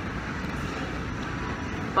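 Steady low rumble of airport terminal background noise, with no distinct sounds standing out.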